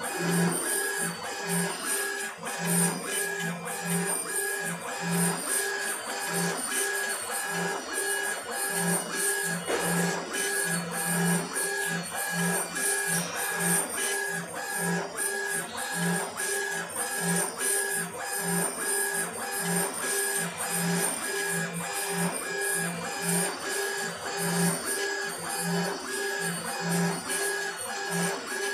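Laser engraving machine raster-engraving a photo into granite: the stepper-driven laser head runs back and forth along its gantry, its motors whining in short repeated pulses, about two a second, one for each pass and reversal.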